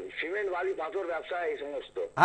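Speech only: a person talking in short phrases.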